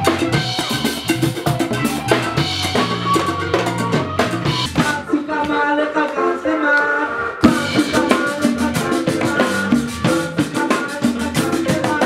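Live band instrumental: drum kit and congas play a busy groove under keyboard and wind-instrument notes. About five seconds in the drums drop out for a couple of seconds, leaving the held melodic notes, then the full kit crashes back in with a hit.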